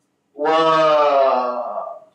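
A man's voice drawing out a long Arabic "wa…" ("and") as a hesitation sound. It is held for about a second and a half, with the pitch slowly falling.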